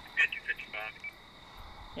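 Brief speech in the first second, then a quieter stretch, with a faint steady high-pitched tone running underneath.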